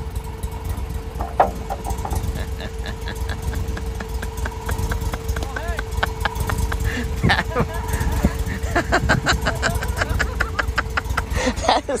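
A farm utility vehicle's engine running with a low rumble and a constant hum. From about two seconds in, many short high calls repeat over it.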